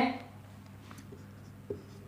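Marker pen writing on a whiteboard: faint strokes, with a small tap near the end.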